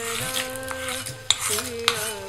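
Wooden spatula scraping and tapping against a small black metal tempering pan as the fried seasoning is pushed out of it, with two sharp knocks in the second half. Background music with held sung notes runs underneath.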